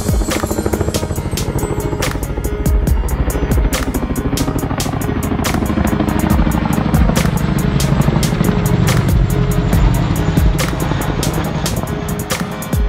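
CH-47 Chinook tandem-rotor helicopter flying overhead, its rotor blades beating in a rapid, even rhythm over a low rumble, with music playing alongside.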